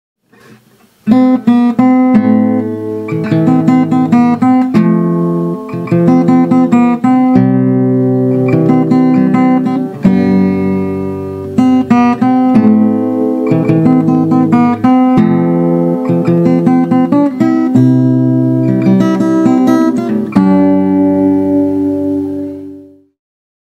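Acoustic guitar in standard tuning played fingerstyle, starting about a second in: plucked bass notes under a melody of single notes and chord tones.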